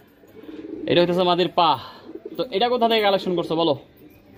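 A man's voice in two short stretches, with pigeons cooing in the loft behind.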